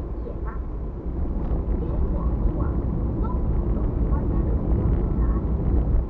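Car cabin road and engine noise while driving: a steady low rumble of tyres and engine that grows louder about a second in.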